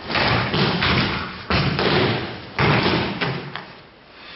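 Aikido breakfalls: bodies and arms thudding and slapping onto padded training mats as thrown partners land, a series of sudden impacts with the three loudest about a second apart.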